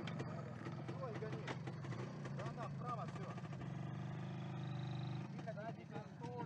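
Sidecar motorcycle's engine running steadily at low revs, held a little higher and stronger for about a second near the end before dropping back. Faint voices can be heard over it.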